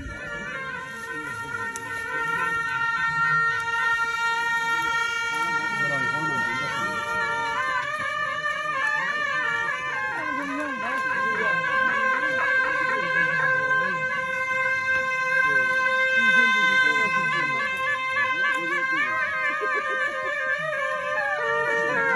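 Bhutanese jaling (double-reed ceremonial horns) playing a processional welcome: loud, reedy held notes with a wavering, ornamented melody over them, the music growing louder about two seconds in. Voices of the crowd murmur underneath.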